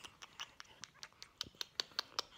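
A baby sucking and swallowing from a bottle: a quick, faint run of soft wet clicks, about five a second.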